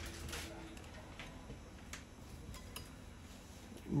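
A few faint, light clicks of a steel dulcimer string being pushed through the hole of a metal tuning peg on the scroll head, the wire ticking against the peg.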